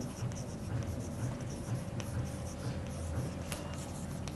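Chalk scratching on a blackboard as words are written by hand, with a couple of sharper ticks of the chalk against the board, about two seconds in and near the end.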